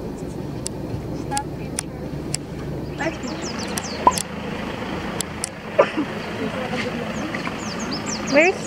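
A low, steady vehicle rumble under indistinct voices inside a van, changing about three seconds in to open-air background with scattered voices and faint high chirps.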